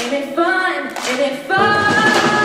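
A female lead singer sings a held melody line with hand claps and almost no instrumental backing, then the full live rock band (drum kit, electric guitars and bass) comes back in loudly about one and a half seconds in.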